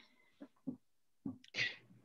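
A person's faint short vocal noises, then a brief breathy burst of air near the end.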